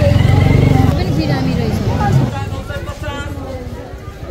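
A motor vehicle engine running close by, loud for about two seconds and then fading away, over the chatter of a crowd.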